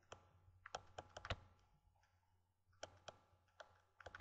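Light clicks and taps of a stylus on a pen tablet during handwriting, about nine in all: a cluster in the first second and a half, then a few more near the end, with near silence between.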